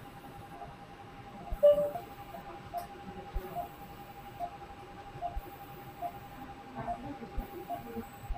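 Operating-theatre room sound: a short electronic beep from a patient monitor repeats evenly about every 0.8 seconds, a pulse-tone rate of roughly 75 a minute, over a constant high hum. One louder, brief tone sounds at about a second and a half in.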